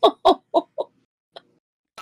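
A loud burst of laughter: quick 'ha' pulses, about five a second, each dropping in pitch, stopping under a second in.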